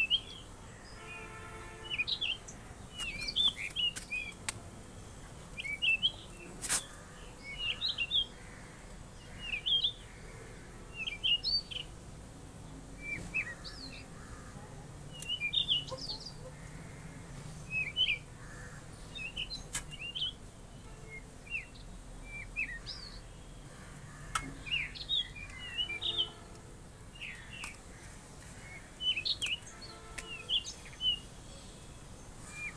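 A bird singing short, chirpy phrases, repeated about every two seconds over a faint steady background hum.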